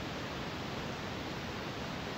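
Steady background hiss with no distinct sounds standing out.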